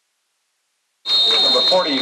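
Silence, then about a second in the sound cuts in abruptly with a referee's whistle: one shrill high blast of under a second, blowing the play dead after the tackle, over voices.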